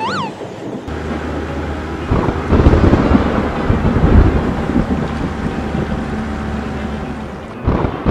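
Sound effects of a thunderstorm: loud low rumbling thunder with wind noise, over a steady low engine hum from the toy truck that sets in about a second in. A brief up-and-down tone comes at the very start.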